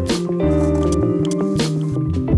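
Background music: sustained chords over a held bass note, with two swishing swells about a second and a half apart.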